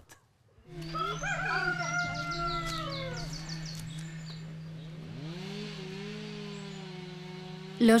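A rooster crowing once, a long call starting about a second in and falling in pitch at its end, over a steady low drone.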